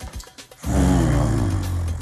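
Dramatic film-score sting: after a short quiet moment, a sudden loud, deep low chord hits about two-thirds of a second in and holds, with wavering tones above it.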